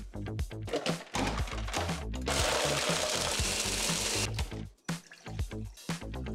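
Countertop blender grinding ice and electrolyte mix into a slush. It starts about a second in, runs loudest for about two seconds and stops about four seconds in, over background music with a steady beat.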